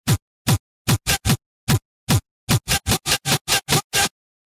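A techno track chopped into short separate bursts, each a single kick-drum hit with hiss on top and silence between. The hits come irregularly at first, then quicken to a rapid stutter of about six a second before the music stops.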